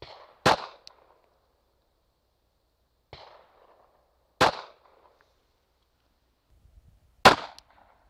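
Three single pistol shots from a Glock 42 subcompact in .380 ACP, spaced about three to four seconds apart, each a sharp crack with a brief echo.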